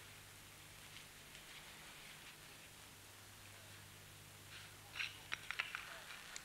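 Very quiet soundtrack room tone: a steady faint low hum and hiss, with a few faint short clicks near the end.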